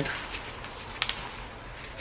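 Faint rustling of bubble wrap being handled, with one short crinkle about a second in.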